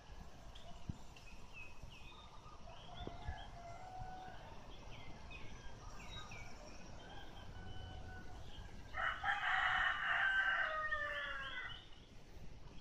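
A rooster crowing once, about nine seconds in, a single call lasting about two and a half seconds that falls in pitch at the end, over faint, repeated chirping of small birds.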